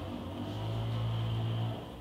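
A pause filled by a steady low hum of room tone, with no distinct event.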